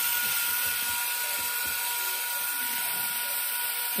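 Electric leg actuators of an HG P805 1/12-scale Patriot launcher trailer running together as the four support legs slowly lower, a steady two-pitched whine.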